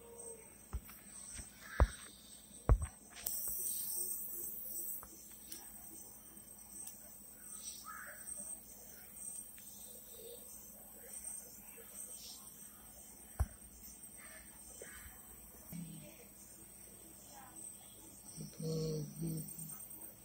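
Rural outdoor ambience: a steady high-pitched insect drone with scattered bird calls. A few sharp knocks cut in, two loud ones about two seconds in and another around thirteen seconds, and a brief voice sounds near the end.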